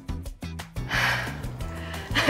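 Background music with a steady beat and bass line, with a single loud, breathy exhale or gasp from a person about a second in.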